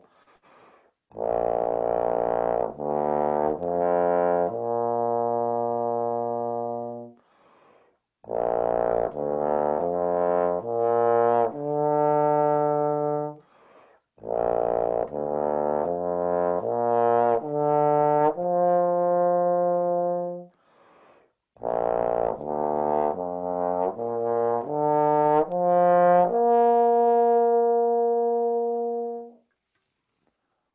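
Bass trombone playing slurred ascending arpeggios in the low register: four phrases, each a short climb of notes that settles on a long held note, with brief gaps for breath between them. Each phrase ends on a higher note than the one before.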